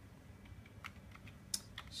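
Faint keystrokes on a computer keyboard: about six separate key clicks, starting about half a second in, as a short word is typed.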